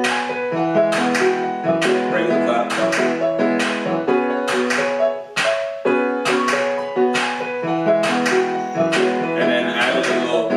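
Instrumental R&B beat loop played back from production software: twinkly sampled keyboard chords over a held bass line, with programmed hand claps striking on a steady beat.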